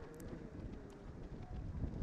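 Outdoor road ambience on the broadcast microphone: a low rumble that grows louder about one and a half seconds in, with a few faint taps.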